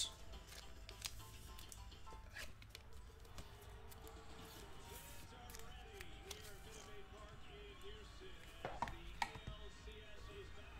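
Faint handling of trading cards, light scattered ticks and clicks, with two louder knocks about nine seconds in. Quiet background music runs underneath.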